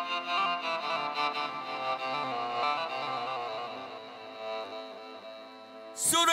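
Arabic ensemble music, an instrumental passage with a violin-like bowed-string melody over accompaniment, quieter over the last couple of seconds.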